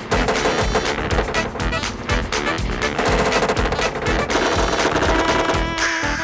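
Rap backing beat with a fast, rapid-fire run of drum hits that keeps going without a break, and held synth tones coming in during the second half.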